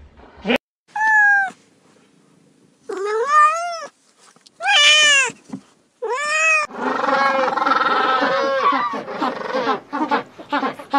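A cat meowing four times, each call rising then falling in pitch. About two-thirds of the way through it cuts to a flock of penguins calling continuously, many overlapping calls at once.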